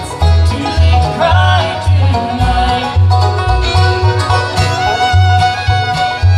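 A live bluegrass band playing: banjo rolls and mandolin over an upright bass that pulses about twice a second, with a fiddle joining partway through on a long held note.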